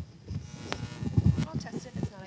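Microphone handling noise as a microphone is switched on and handled: irregular low bumps, a sharp click about three-quarters of a second in, and a faint buzz.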